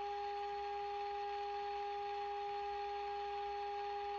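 Steady test tone with a faint hiss behind it from the Marconi 341 valve radio's speaker, as the radio reproduces the 455 kHz alignment signal fed into it. The IF transformers are being tuned to peak this tone's output.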